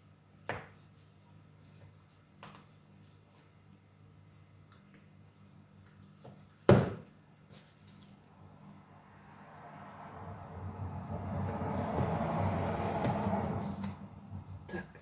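A metal spoon clicking and knocking against a plastic tray and a glass: a couple of light clicks, then one sharp, louder knock about seven seconds in. In the last few seconds a rushing noise swells up and holds, then stops abruptly.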